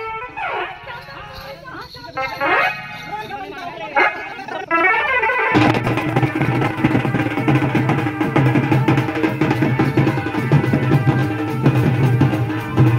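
Loud shouted calls rising and falling in pitch, typical of Raut Nacha dancers' cries. About halfway through, a Raut Nacha band of drums and large cymbals comes in suddenly with a fast, steady beat.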